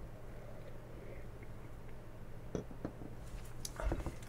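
A man quietly sipping and swallowing beer from a glass over a steady low room hum, with a few faint ticks in the second half. A soft knock near the end as the glass is set down on the bar top.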